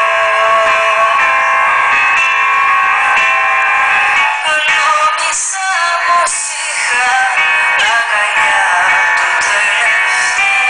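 Live music: a woman singing into a microphone over keyboard accompaniment. The recording sounds thin, with almost no bass.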